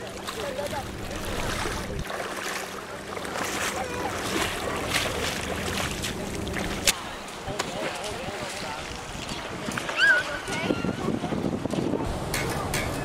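Shallow water sloshing around a person wading, with wind on the microphone and faint voices of other swimmers. A sharp click comes about seven seconds in, and a brief high squeal about ten seconds in.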